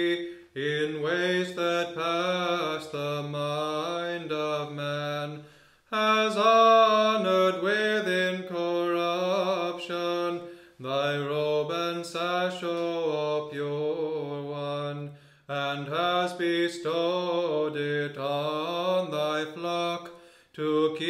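Orthodox liturgical chant: a voice singing a hymn in long melodic phrases, with a short breath between phrases about every five seconds.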